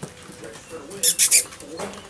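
Puppies moving about on a wooden deck: a short burst of scratchy rustling about a second in.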